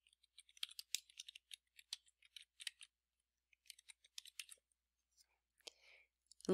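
Faint typing on a computer keyboard: quick runs of light key clicks with a short pause in the middle, as a name is typed into a text box.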